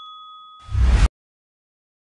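A notification-bell 'ding' sound effect rings out and fades away over the first half-second. Then comes a brief loud burst of noise that cuts off abruptly about a second in.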